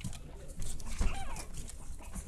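A small puppy giving a short, high yip with a bending pitch about a second in, barking at the camera's light, which frightens it.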